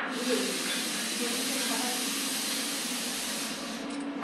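Espresso machine steam wand hissing steadily, cutting in suddenly and fading out just before the end.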